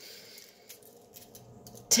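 Faint crinkles and small clicks of aluminium foil being handled, over quiet room tone.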